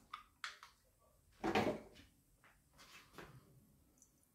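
Faint clicks and knocks of a beer can and a glass being handled, with beer starting to pour into the glass near the end.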